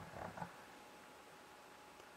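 Near silence: quiet room tone, with a faint brief sound in the first half second.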